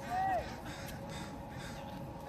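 A crow caws once right at the start: a single short call that rises and falls in pitch. Low, even outdoor background follows.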